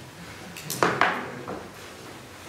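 A few short knocks and clatters of handling noise at the table, the two loudest close together about a second in, over low room noise.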